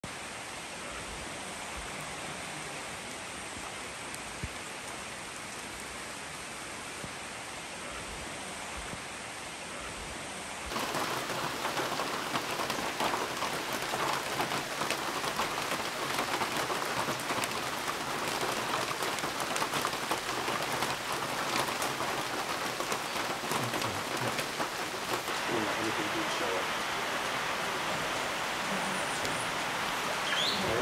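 Steady rain falling in rainforest. About ten seconds in it cuts to louder, closer rain with many drips pattering.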